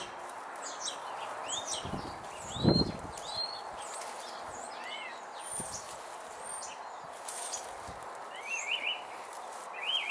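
Small garden birds chirping over and over, short rising and arching calls, against a faint steady outdoor background. A single dull low thump sounds about three seconds in.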